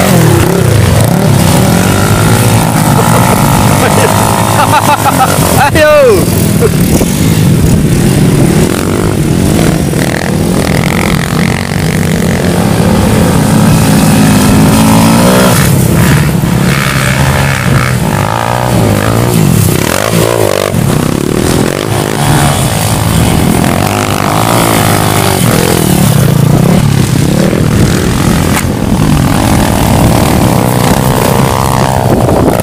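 Trail motorcycles revving hard as they climb a muddy, rutted hill track, with the engine pitch rising and falling repeatedly with the throttle. People's voices are heard at times over the engines.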